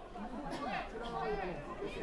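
Faint, distant voices of several people talking and calling out on the field and sideline.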